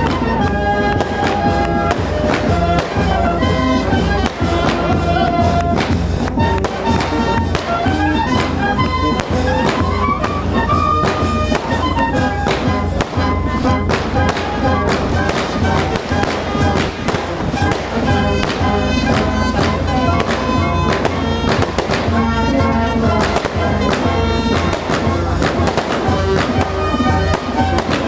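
A band playing a melody over a steady bass, with a long string of firecrackers crackling rapidly throughout.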